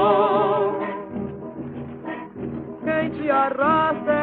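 A 1940 78 rpm shellac record of a samba for singer and orchestra playing on a turntable. A long held note with a wide vibrato fades about a second in, a quieter passage follows, and the music picks up again near the end. The sound is dull, with no treble.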